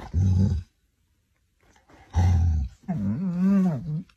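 A chocolate Labrador growling: two short low growls, then a longer wavering growl in the last second.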